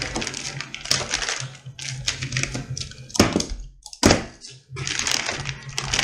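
Plastic packing strap and clear plastic wrap being handled on cardboard boxes: crackling and clicking, with two heavier knocks about three and four seconds in.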